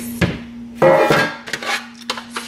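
Disposable aluminium foil loaf pans being taken down and handled: a small click, then a louder crinkling clatter of the thin foil about a second in.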